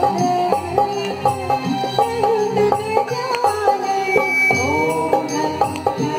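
Live Indian song with a dholak drum keeping a steady rhythm, an electronic keyboard, and voices carrying a gliding melody.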